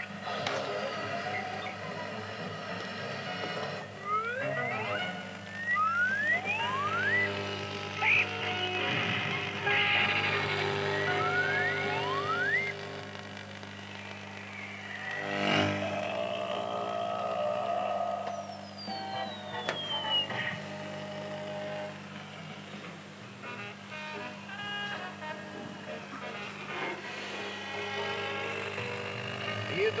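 A cartoon soundtrack playing through an old valve television's loudspeaker: music with several quick rising whistle glides in the first half, a sudden knock about halfway through and a falling glide a little later, over a steady low hum.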